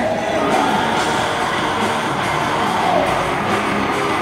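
Live rock band playing loudly in an arena, with the crowd cheering over the music.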